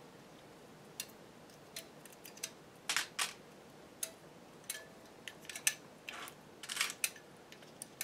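Light, irregular metallic clicks, a dozen or so, of steel latch needles being lifted out of a circular sock machine's cylinder slots and clinking together in the hand.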